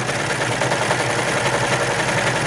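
Baby Lock Imagine serger (overlock machine) running steadily at speed, stitching a seam down one side of fabric.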